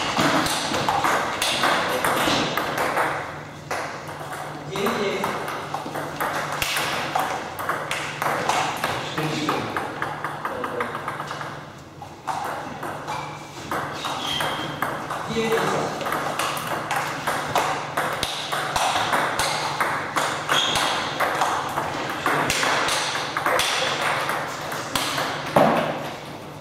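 Table tennis balls clicking off bats and tables in rallies, with hits from a neighbouring table running together into a near-continuous patter.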